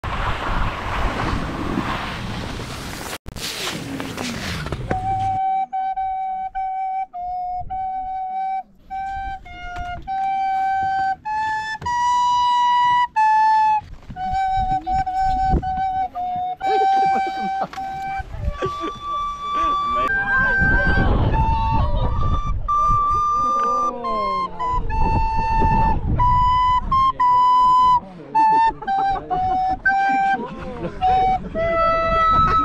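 A recorder playing a simple tune, one held note at a time, with voices under it in the second half. It is preceded by about five seconds of rushing wind on the microphone from snowboarding.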